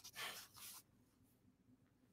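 Near silence: room tone, with a faint soft rustle in the first second.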